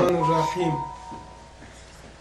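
A man's voice for a moment as the sound cuts in, with a single steady ringing tone that fades over about a second and a half, then the quiet hum of the room.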